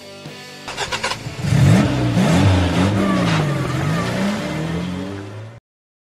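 The tail of guitar music, then a car engine starting about a second in and revved up and down several times before cutting off abruptly near the end.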